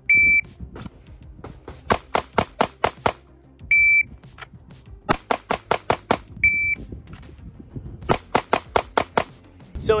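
Three short electronic beeps, each followed about a second and a half later by a quick string of six to eight 9mm pistol shots, about five a second, from a Sig Sauer P365 X-Macro Comp. The beeps are typical of a shot timer starting each string.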